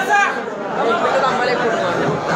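Speech: a man talking over a microphone, with crowd chatter around him.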